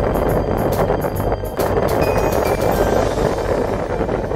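Steady rush of wind and road noise from a moving car, heard from its window.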